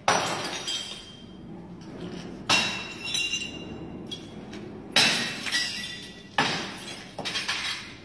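A series of about five loud smashing crashes, one every one to two and a half seconds, each followed by a ringing, clattering tail, like something brittle breaking.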